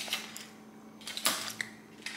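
Quiet eating sounds from a man chewing a mouthful of cake, with two short noises, one at the start and a louder one just past a second in.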